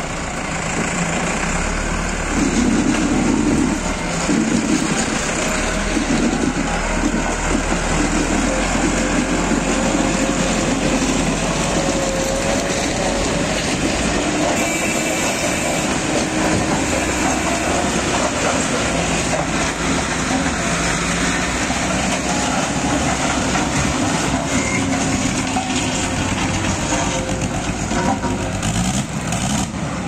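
Diesel tractor engines running loudly and steadily, working harder from about two seconds in. They are under load pushing a stalled road roller to bump-start it.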